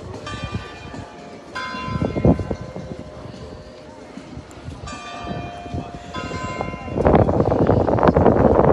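Church bell ringing, about four strikes in two pairs, each note ringing on and fading. Nearby voices grow loud near the end.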